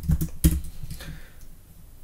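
Keystrokes on a computer keyboard finishing a typed prompt and entering it, with one sharp, loud key press about half a second in.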